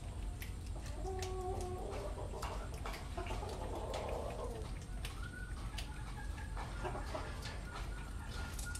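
Clucking animal calls, some drawn out into short held tones, over light scattered clicks and a steady low hum.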